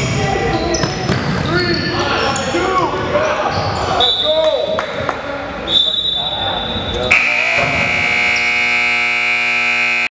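Sneakers squeaking and a ball bouncing on a hardwood gym floor amid players' voices. About seven seconds in, the scoreboard horn starts suddenly and holds one loud steady tone, signalling the end of the quarter.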